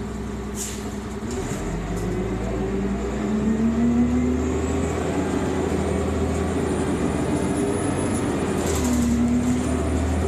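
Cummins Westport ISC-280 engine of a 2001 New Flyer D40LF transit bus, heard from inside the passenger cabin. It comes up from idle about a second in as the bus pulls away, and the engine pitch climbs twice as the bus accelerates through the gears of its ZF Ecomat automatic transmission.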